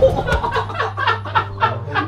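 Laughter in a rapid string of short bursts, with a steady low hum underneath.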